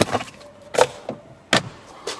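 Handling noise as a car's service logbook is put back into its document wallet: a few knocks and rustles, with a sharp click about one and a half seconds in.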